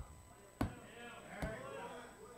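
Two short knocks, a sharp one and then a thinner one under a second later, with a faint voice murmuring underneath.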